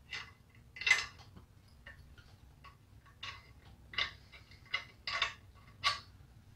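Light, scattered metallic clicks and taps, about eight over a few seconds, from metal engine parts and tools being handled.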